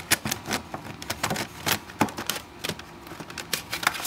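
Plastic CD jewel cases clicking and clacking as a finger flicks along a row of them on a shelf: quick, irregular clicks, several a second.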